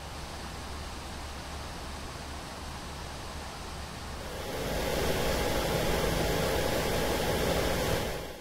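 Cooling fans of a Mechrevo Aurora Pro gaming laptop running flat out under a stress load, a steady rush of air noise. About halfway through, a Lao Ma third-generation pressure-type laptop cooler is heard at 100% fan speed, forcing air into the laptop from below. The noise then becomes much louder, with a faint steady whine in it; the cooler at full speed is very loud, about 65 dB overall.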